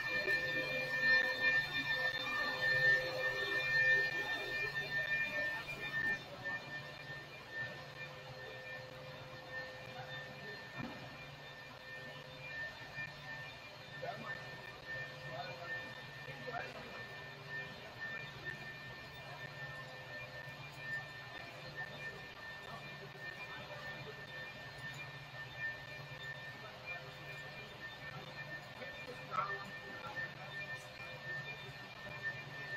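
A steady whine of several high tones that sets in suddenly, is loudest over the first few seconds and then fades. Under it is a low hum that pulses about once a second, with faint voices.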